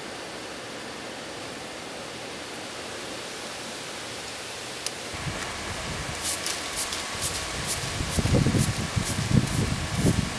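Steady rushing noise of a dirt forge fire blown by a hair dryer through a pipe, which cuts off about five seconds in. Then a straw broom sweeps the top of a granite rock anvil in quick swishes, about three a second, with low thumping rumbles near the end.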